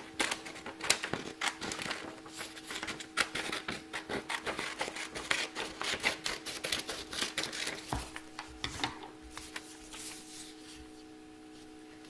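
Scissors cutting a long strip from a sheet of paper: a quick, uneven run of snips and paper crackle that dies away near the end, over a faint steady hum.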